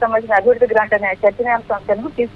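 Only speech: a reporter talking over a telephone line, the voice thin and narrow.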